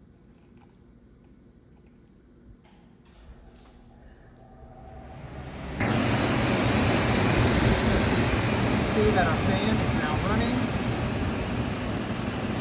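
A few faint clicks of jumper clips, then from about six seconds in the air handler's squirrel-cage blower fan running with a loud, steady rush of air. The fan has been switched on by jumping the thermostat's G terminal to R.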